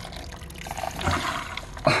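Water from a hose flushing through a car heater core and pouring out of its outlet pipe into a bucket, splashing steadily into the foamy, rust-brown water. It is the first flush after a vinegar soak, washing out rust and sediment.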